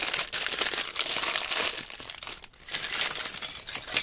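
Clear plastic parts bag full of Lego pieces crinkling as hands handle it and work it open, the pieces shifting inside. The rustling dips briefly about two and a half seconds in, then resumes.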